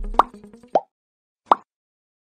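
Three short cartoon-style pop sound effects, the kind that mark buttons popping onto a subscribe animation. The first comes just as a music track cuts off, a second follows about half a second later, and a third comes near the end.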